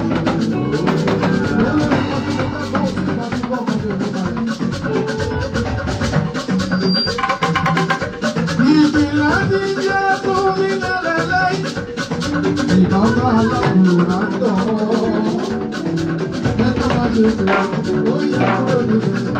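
Live gospel praise music: a band playing with drums and a shaker keeping a fast, busy beat, and a man singing into a microphone over it.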